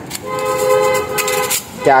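A vehicle horn sounding one steady two-tone honk lasting about a second and a half.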